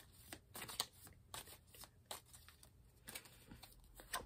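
A deck of tarot cards being shuffled by hand: faint, irregular soft clicks and rustles of cards against one another, several a second.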